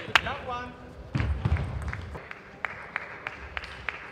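Table tennis ball clicking against the bats and table in a rally, about three sharp hits a second. A short voice cry near the start.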